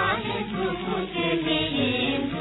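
Singing with musical accompaniment from a 1940s Hindi film song recording, the voice wavering and sustaining its notes.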